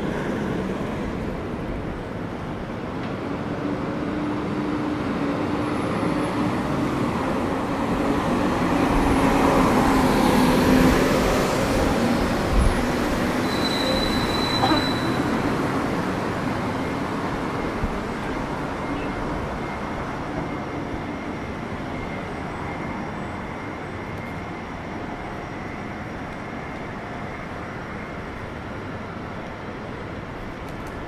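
City street traffic noise with a large vehicle's engine hum passing close by, loudest about ten seconds in, then settling to a steadier, quieter distant traffic hum.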